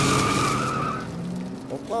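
Car tyres squealing over a rising engine rev as a car peels out and pulls away, fading about a second in.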